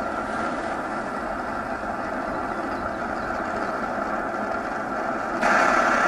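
Brass camp stove burning under a pot with a steady rushing roar. It swells louder near the end and then cuts off abruptly.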